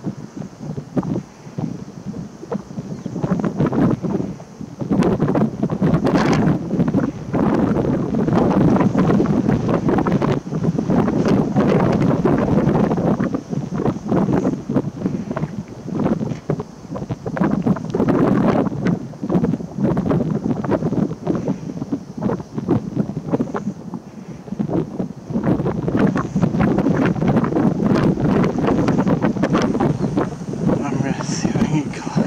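Wind buffeting the camera's microphone: loud, irregular rumbling gusts that rise and fall, quieter in the first few seconds.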